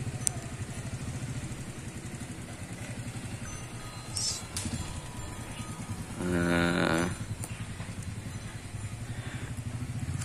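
A motorcycle engine idling steadily with a rapid low pulse. Just after four seconds a short high chirp cuts in, and about six seconds in there is a short, evenly pitched sound lasting under a second.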